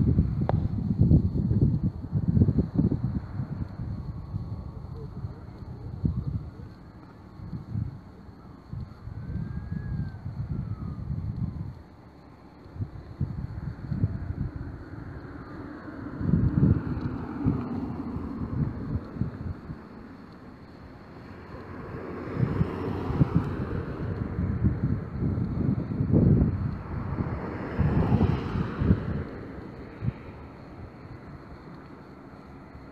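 Wind buffeting the microphone in irregular gusts, with street traffic noise that swells over the last several seconds.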